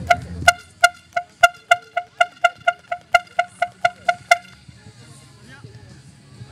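A horn tooted in a rapid string of about sixteen short, identical high beeps, roughly four a second, stopping about two-thirds of the way in.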